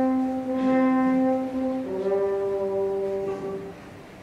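Theatre orchestra with brass to the fore playing two long held chords, the change coming about two seconds in and the sound dying away near the end: the orchestral introduction to a slow operetta song.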